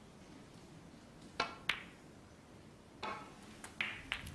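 Snooker balls clicking: a sharp click of the cue striking the cue ball, then the cue ball hitting a red a fraction of a second later, followed by softer knocks about three seconds in as the balls come to rest.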